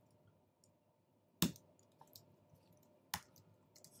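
Computer keyboard keys being typed: two sharp key clicks about a second and a half apart, with a few faint taps between them.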